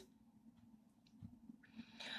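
Near silence, with faint soft handling sounds as a crocheted piece of viscose yarn fabric is turned over by hand.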